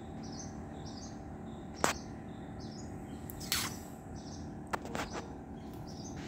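High-pitched bird chirps, one short note repeated about every half second, over steady background noise, with several sharp clicks, the loudest about two seconds in and three and a half seconds in.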